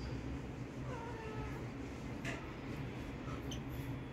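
A cat meowing once, a short call about a second in, with a brief click a little after two seconds.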